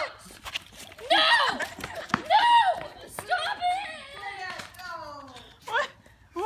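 A woman's voice shrieking and squealing in a run of high-pitched cries, with falling wails near the middle; she is frightened of a frog.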